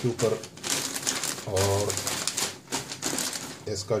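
Sheets of newspaper rustling and crackling as hands flatten and smooth them out, in a couple of short spells between bits of talk.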